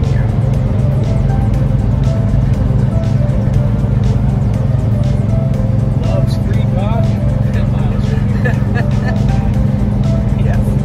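Steady low drone of a semi truck's engine and road noise heard inside the cab while cruising on the highway, with music and an indistinct voice playing faintly over it.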